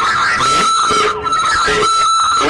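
Men talking, with a steady high-pitched whine running underneath.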